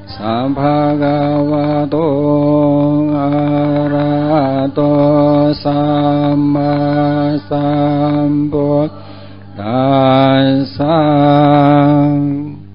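Male voice chanting in long, steady held notes, several starting with a slight upward slide in pitch, over a continuous low drone; the chant breaks off briefly about nine seconds in, then resumes.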